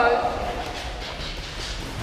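Boxers' feet stepping and shuffling on the gym's padded mat during sparring, a few faint light knocks over steady hall noise.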